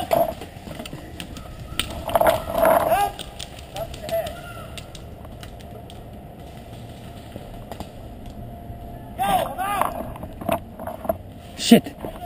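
Shouting voices of players across a paintball field, in two spells: near the start and again near the end. Scattered sharp pops of paintball markers firing come in between.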